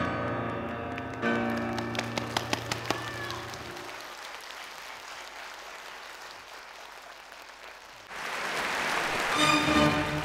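The closing piano chords and last struck notes of a song with piano accompaniment, ringing away into the hall. Near the end a rising wash of noise swells up and pitched music begins.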